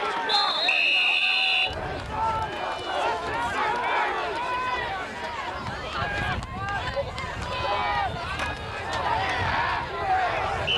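A referee's whistle blown once, a steady shrill tone lasting about a second and a half, just after the start. Shouting and chatter from players and spectators go on throughout.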